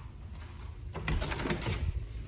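A door knob turning and its latch clicking as an interior door is pulled open: a quick run of clicks and rattles about a second in.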